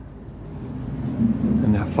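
Low engine rumble growing steadily louder from about half a second in, like a vehicle approaching.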